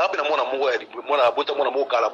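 Speech only: a voice talking rapidly and continuously, with only brief pauses.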